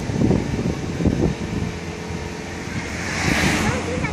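Wind and road noise of a moving car heard through an open side window, a steady rumble with a brief rush of hiss about three seconds in.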